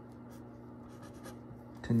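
Pencil writing on paper: a string of faint short scratches as a single digit is written.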